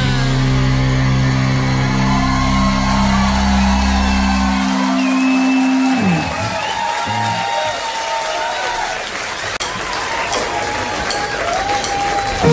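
A live rock band's final chord ringing out on bass and guitar, sliding down in pitch about six seconds in as the song ends. The audience then cheers and whoops.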